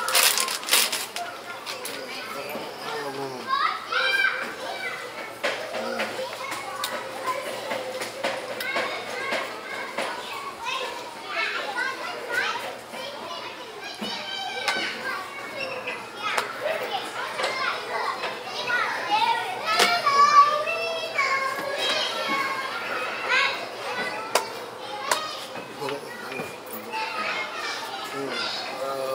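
Children playing, their high voices calling and chattering over one another throughout. A crinkle of plastic bag sounds at the very start.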